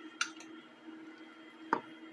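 Quiet stirring of hot chocolate in a saucepan with a wooden fork, as tablea cacao tablets dissolve in the water. Two light knocks of the fork against the pot come shortly after the start and near the end, over a faint steady hum.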